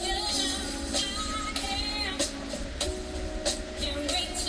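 Live band music: a female vocalist singing over electric guitar and drums, with a steady drum beat.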